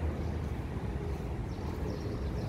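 Steady low rumble of road traffic, with a faint hum over it.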